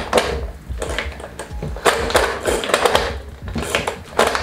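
Hand-pull cord food chopper worked with repeated quick pulls, each spinning its blades through vegetables in the plastic bowl with a short whirring rattle; there is a brief lull about a second in, then the pulls come faster.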